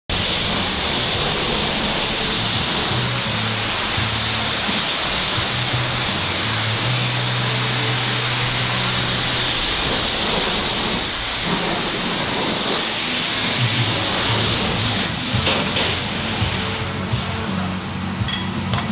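Self-serve car wash pressure wand spraying water, a loud steady hiss that falls away near the end, over background music with held bass notes.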